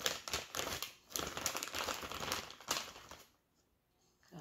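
Packaging crinkling and rustling as items are rummaged through and handled, in short uneven rustles that cut off suddenly about three seconds in.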